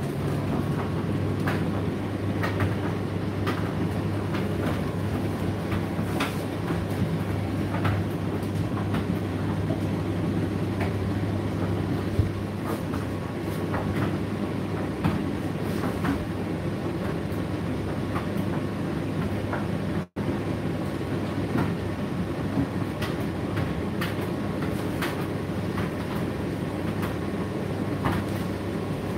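Indesit tumble dryer running: a steady motor and drum hum under the rumble of tumbling laundry, with irregular light clicks and taps as items strike the turning drum.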